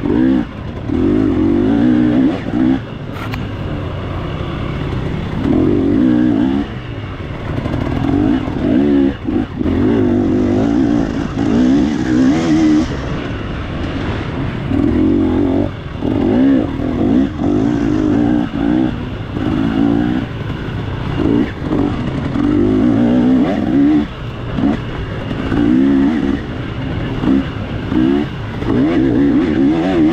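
Off-road dirt bike engine under the rider, revving up and dropping back again and again in short, uneven bursts as the throttle is opened and rolled off through a twisting trail.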